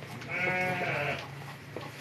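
A single moo from one of the cattle at the feeding trough, a call of about a second with a slightly arching pitch.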